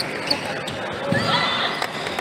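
Celluloid-style table tennis ball bouncing with a few sharp clicks in the first second, with voices in the hall.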